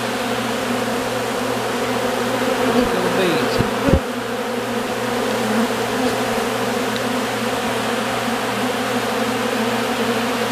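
A large crowd of honeybees buzzing in a dense, steady hum as they rob out a tub of leftover honeycomb scraps. About three seconds in, one bee drones close past the microphone, its pitch rising then falling, and there are a couple of short thumps near four seconds.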